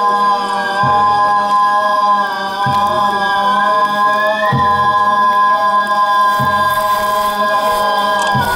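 Live shrine kagura music of the gagaku kind: long, held, slowly bending tones from voice or wind instruments over a large drum struck four times, about two seconds apart.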